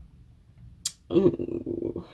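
A woman's drawn-out, creaky hesitation sound, an 'ehh', starting just after a short sharp hiss about a second in: she is stumbling over her words mid-sentence.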